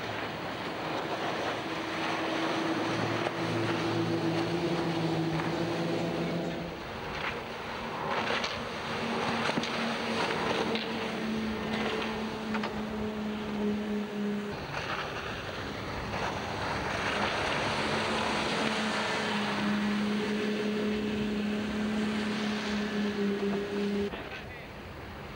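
Twin 4.3-litre V6 petrol engines of a Princess 266 Riviera powerboat running flat out, a steady engine note over the rush of water and wind. The note steps up in pitch about a quarter of the way in and dips briefly around the middle before settling again.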